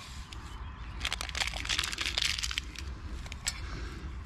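Instant coffee sachets being opened and emptied into stainless steel camp cups: a crinkling, crackling patch of packet and pouring powder starting about a second in and lasting over a second.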